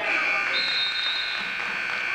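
Gym timekeeper's buzzer sounding one steady electronic tone for about two and a half seconds, then cutting off: the signal that ends a wrestling period.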